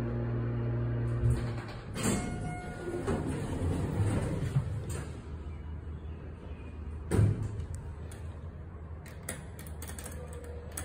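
Elevator car running with a steady hum that stops with a thump about a second in. A knock is followed by a few seconds of sliding-door rumble, then a loud thud about seven seconds in as the doors shut, and a few short button clicks near the end.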